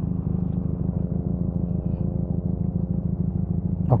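Benelli 302R motorcycle's parallel-twin engine idling steadily, its even low pulsing running throughout.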